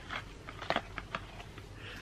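Soap packaging being handled: a scattering of faint, light clicks and crinkles as bars of kojic acid soap are taken from their box and wrapping.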